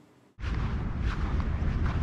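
Near silence, then about half a second in, a sudden switch to steady outdoor wind noise on the microphone, a low rumble with a hiss above it.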